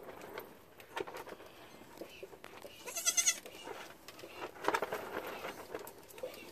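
A young goat kid gives a short, high, quavering bleat about three seconds in while a bottle nipple is held in its mouth, before it has latched on.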